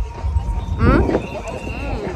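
A person's high, gliding vocal squeal about a second in, held briefly as a thin high note and trailing off, over a low rumble of wind on the microphone.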